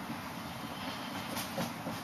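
Dry-erase marker writing on a whiteboard: a few faint strokes in the second half, over a steady room hiss.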